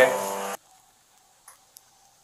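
A voice cuts off abruptly about half a second in, leaving near silence: room tone with two faint clicks.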